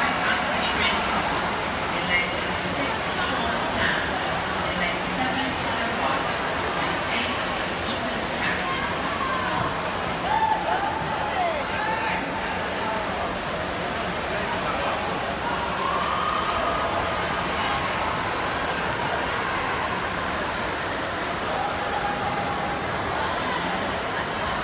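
Swim-meet spectators in an indoor pool hall shouting and cheering a race, a steady dense wash of many voices with a few long drawn-out shouts.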